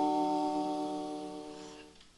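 The final sustained chord of a gospel hymn's instrumental accompaniment, held steady and dying away over about two seconds.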